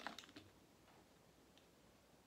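A few faint clicks in the first half second as the cap of a plastic soda bottle is twisted off, then near silence.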